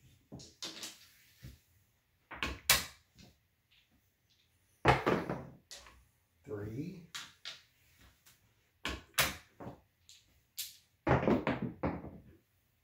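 Craps dice knocked along and thrown down a felt craps table, clattering against the rails, with a few sharp clicks and knocks; the loudest clatter comes about five seconds in.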